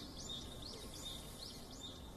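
Faint outdoor background noise with a small bird repeating a short rising chirp, about three times a second.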